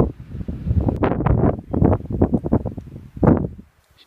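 Wind buffeting the camera microphone in uneven gusts, with a loud gust about three seconds in.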